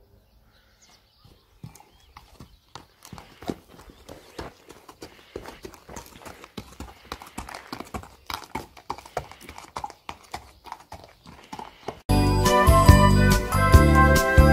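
Hoofbeats of a Pura Raza Española stallion on hard, gritty ground: a quick run of sharp clip-clops that thickens about three seconds in. About twelve seconds in, loud music cuts in suddenly and covers them.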